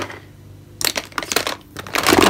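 Plastic makeup compacts and cases clacking and rattling against each other as a hand rummages through a cardboard box of makeup: a quick, dense run of clicks starting about a second in and lasting about a second.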